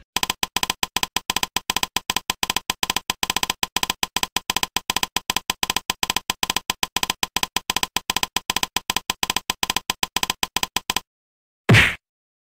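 Typing sound effect: a rapid run of keystroke clicks, several a second, that stops about eleven seconds in. Near the end comes one short, loud stamp-thump effect.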